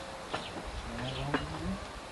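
Voices of a group chatting at a distance over a meal, one voice rising in pitch about halfway through, with two sharp clicks about a second apart.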